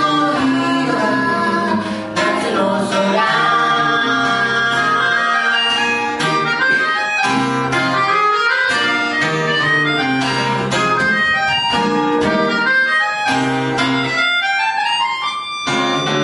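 Melodica (pianica) playing a sustained melody over acoustic guitar strumming, with a rising slide near the end.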